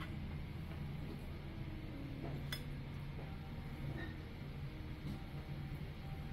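Light clinks of porcelain tableware, with a sharp one about two and a half seconds in, over a steady low room hum.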